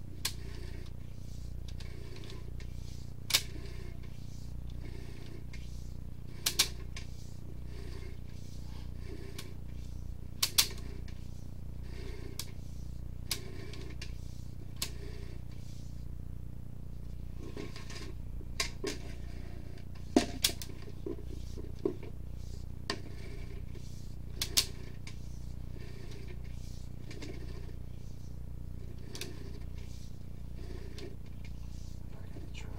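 Sewer inspection camera's push cable being pulled back through the pipe, heard over a steady electrical hum with a faint pulse about once a second. Occasional sharp clicks and knocks from the cable and camera head come through, a dozen or so in all.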